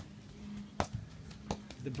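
A few separate sharp taps of a rubber ball bouncing on a concrete driveway.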